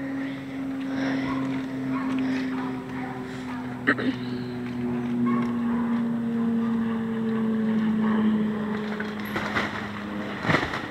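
A four-wheeler (ATV) engine idling steadily, its hum sinking slightly in pitch over the seconds.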